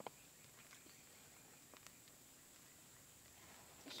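Near silence: a faint steady hiss with a couple of faint ticks.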